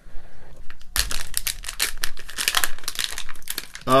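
Foil minifigure blind bag crinkling and crackling as it is handled and torn open, starting about a second in and running as a dense string of sharp crackles.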